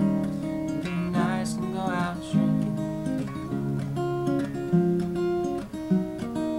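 Acoustic guitar fingerpicked in an instrumental passage between sung verses, a continuous run of plucked notes and chord changes.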